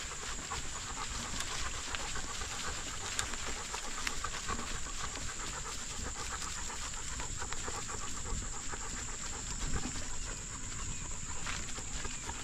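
A dog panting hard, over a low rumble and a steady high-pitched hiss.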